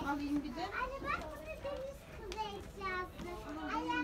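Young children's voices chattering indistinctly, with no clear words and a few high-pitched bits of child speech.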